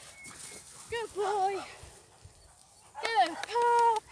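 A woman's high-pitched, sing-song praise calls to a dog, with no clear words: a few short rising and falling calls and a long held note near the end.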